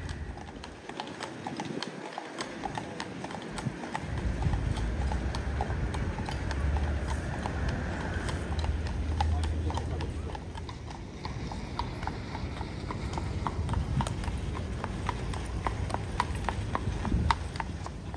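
Horse hooves clip-clopping on a paved road as a horse-drawn carriage goes by, a steady run of sharp hoof strikes.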